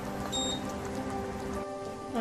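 Sugar syrup boiling hard in a pan, a dense crackle of bursting bubbles; it cuts off abruptly near the end.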